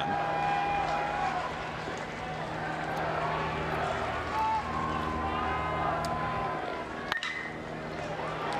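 Ballpark crowd noise with long held tones running through it, then a single sharp crack of a metal college baseball bat hitting the pitch about seven seconds in.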